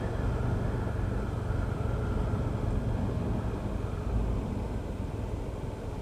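Yamaha FZ-25 motorcycle on the move: its single-cylinder engine running at a steady pace under a low, even rumble of road and wind noise.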